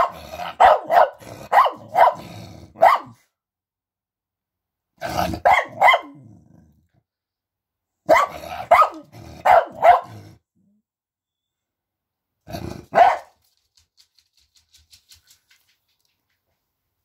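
Pet dog barking in four runs of short barks, about sixteen in all, with pauses of about two seconds between the runs.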